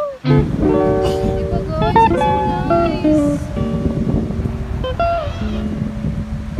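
Background music: a light, bright tune on plucked strings.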